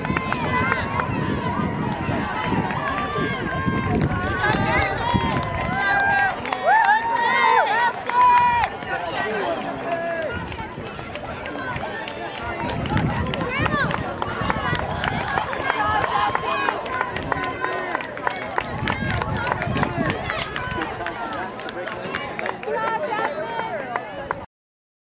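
Spectators and teammates shouting and cheering encouragement to runners, with high yells that rise and fall, loudest in the first half. Runners' footsteps patter on the track as they pass.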